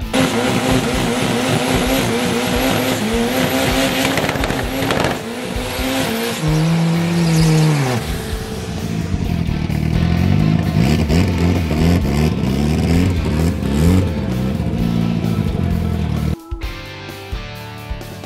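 Drag-racing sport-bike engines revving high through burnouts, with tyre squeal and a fall in revs about eight seconds in. Then a drag car's engine revs up in repeated rising steps during its burnout. The engine sound cuts off suddenly near the end and music takes over.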